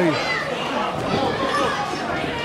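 Crowd of spectators in a hall, many voices chattering and calling out at once, with no single voice standing clear.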